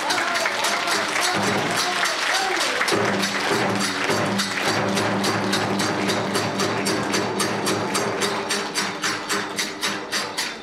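Kagura hayashi festival music: a barrel drum and hand cymbals beat a fast, steady rhythm under a held, wavering melody line.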